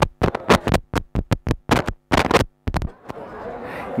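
A rapid, irregular string of sharp crackles and pops through PA loudspeakers, about fifteen in under three seconds, cutting in and out, then only a faint hum: the sign of a faulty cable connection in the sound system.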